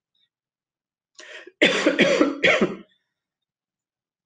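A woman laughing briefly: a faint breath, then three short bursts of laughter, starting about a second and a half in.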